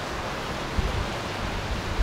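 Steady outdoor background noise: an even hiss with an uneven low rumble underneath.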